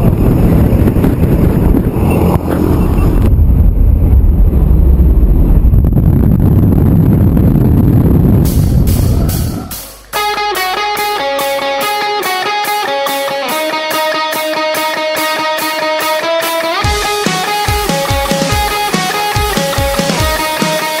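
Loud wind and engine noise from the jump plane's open door during a tandem skydive exit. The noise fades about ten seconds in and gives way to music with guitar; drums come in near the end.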